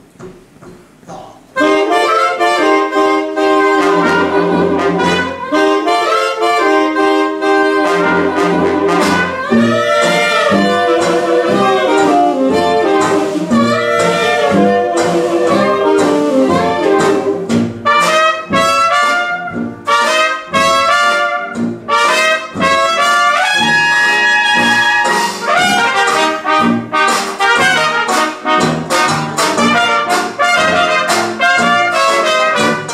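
Traditional 1920s-style jazz band with trumpets, saxophones, trombone and sousaphone playing an ensemble number, the trumpet carrying the lead. The band comes in suddenly about a second and a half in and plays on without a break.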